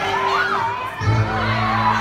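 A crowd of children shouting and cheering over dance music. The music has steady held bass notes that change to a new note about a second in.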